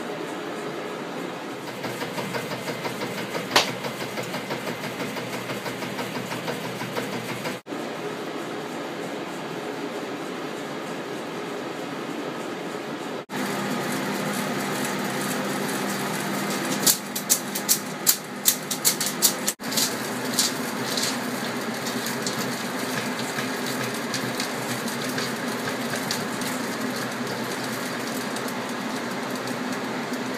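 Motorised 35mm film rewind bench running, large spools winding film from one to the other with a steady mechanical whir. A quick run of sharp clicks comes a little past the middle, and the sound breaks off abruptly for an instant a few times.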